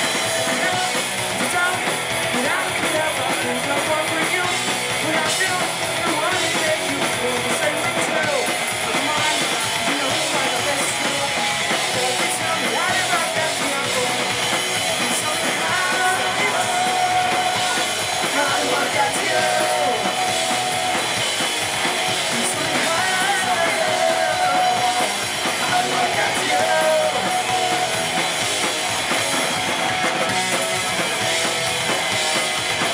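Live punk rock band playing a song at full volume: distorted electric guitars, bass and a pounding drum kit, with sung vocals.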